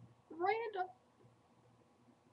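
A single short, high-pitched vocal call lasting about half a second, its pitch rising and then levelling off.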